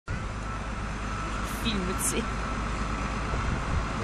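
Large modern farm tractor's diesel engine running steadily as it drives along the road towing a float.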